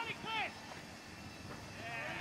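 Two short, high-pitched shouts in the first half second, then faint background noise.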